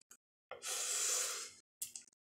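A long hissing breath, about a second, then a shorter breath near the end: a person breathing hard against the burn of a very hot chicken wing.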